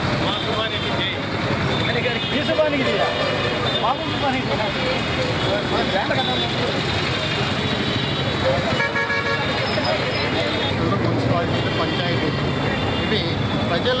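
Street ambience of a marching crowd: many voices over passing traffic, with a vehicle horn tooting, clearest about nine seconds in.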